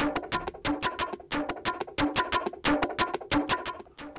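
Conga loop playing through a software distortion effect as a quick, evenly repeating pattern of hits with a ringing, buzzy tone. It hardly sounds like percussion, more like a futuristic synthesized drum.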